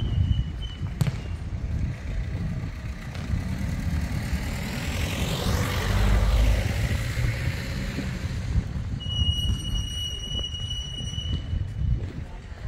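A vehicle passes by, building to its loudest about halfway through and then fading, over a steady low rumble. Near the end a thin, steady high tone sounds for about two seconds.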